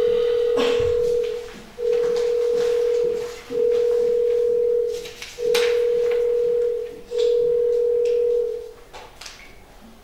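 Electronic calling tone: a steady mid-pitched beep about a second and a half long, repeated five times with short gaps, as a phone or video link is being dialled. It stops about nine seconds in.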